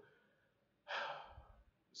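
A man's audible breath, a single breathy rush a little under a second long near the middle, fading away.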